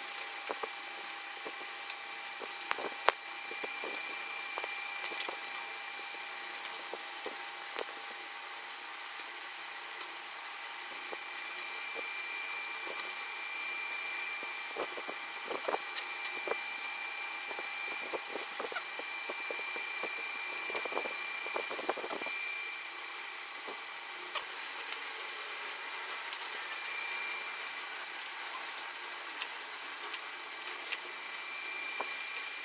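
Masking tape being picked up with a small blade and peeled off a freshly painted plastic motorcycle fairing, heard as scattered light ticks and a few short scratchy rustles over a steady mechanical hum.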